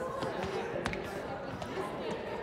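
Indistinct voices of several people talking in an auditorium, with a few sharp taps or knocks, the clearest about a second in.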